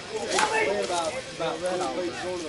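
A slowpitch softball bat strikes the ball once, a sharp crack about half a second in, with people talking close by.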